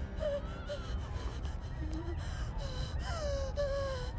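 A frightened young boy gasping and whimpering in short, shaky breaths, with a longer falling whimper near the end, over a steady low rumble.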